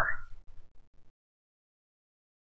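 The last syllable of a man's spoken phrase trailing off, then a moment of faint low noise and dead silence from about a second in.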